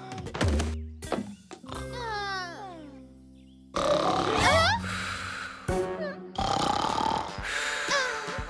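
Cartoon soundtrack: a character's sung lullaby with music, the voice sliding down in pitch. About four seconds in it turns suddenly louder and busier, with rising squeaky glides.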